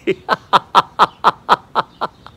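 A man laughing in a steady run of short "ha" bursts, about eight in all at roughly four a second, each falling slightly in pitch: deliberate laughter-yoga laughing.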